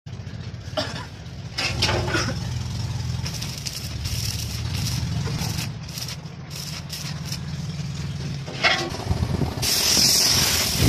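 Paintbrush strokes scratching finish onto carved wood over a steady low mechanical hum. Near the end a spray gun starts, with a loud steady hiss of compressed air.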